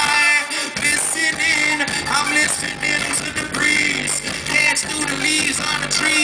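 Live band music with a male voice singing into a microphone over guitar, keyboard and bass, loud and steady throughout.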